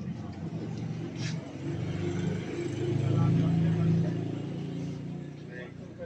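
A motor vehicle's engine passing close by on the street: a low rumble that swells to its loudest about three seconds in and then fades away, over faint background chatter.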